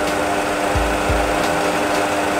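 Steady cockpit hum of a Boeing 737 Classic full flight simulator with both engines running at idle, holding one constant tone, with two deep low thumps in the middle.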